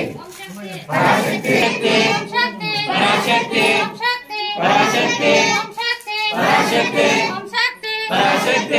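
A group of devotees chanting a devotional chant together in short repeated phrases, each about a second long with brief pauses between.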